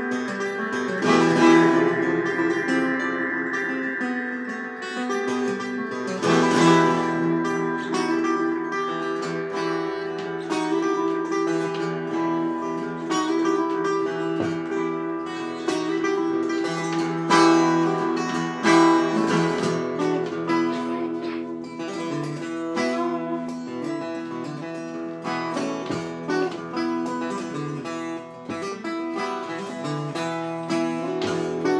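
Solo acoustic guitar playing an instrumental passage: sustained strummed chords, with a few harder strums standing out.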